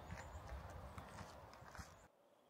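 Faint outdoor ambience with a few soft clicks, cutting off to silence at the very end.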